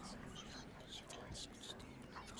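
Faint whispering voices over a low, steady drone.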